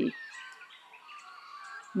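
Birds chirping faintly in the background, short thin calls over a soft outdoor hiss.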